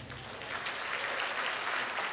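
Congregation applauding right after a sung piece ends, a steady patter of many hands clapping.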